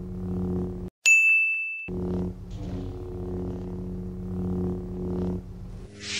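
Steady low electronic hum of a lightsaber sound effect, cut off just under a second in by a bright ringing ding that lasts about a second, after which the hum returns.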